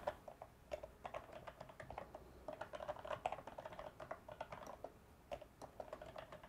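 Faint computer keyboard typing: quick, irregular keystrokes, with a brief pause about three quarters of the way through.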